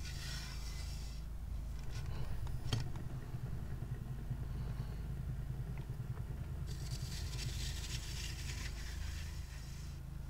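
Paint spinner turning a freshly poured acrylic canvas: a steady low rumble, with a hiss during the first second and again from about seven to nine seconds in, and a single sharp click a little under three seconds in.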